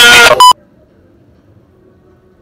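A loud, sustained pitched sound cuts off abruptly about half a second in, followed at once by a short, loud electronic beep. After that there is only faint background hiss.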